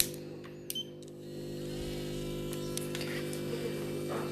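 Brushless electric manicure drill (nail e-file) running at a steady speed, a steady hum with a fainter higher whine joining about a second in, as a yellow cuticle bit is run in reverse. Two small clicks come in the first second.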